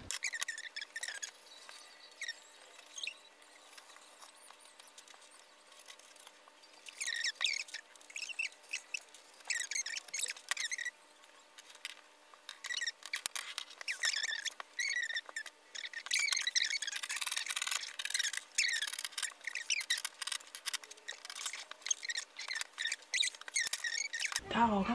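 Scissors snipping through fabric: a few scattered cuts, then a run of quick crisp snips with short high scrapes of the blades, busiest in the second half.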